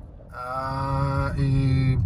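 A man's voice holding one steady low note for about a second and a half, with a short break in the middle, like a drawn-out hesitation sound or hum between sentences, over the low rumble of the car.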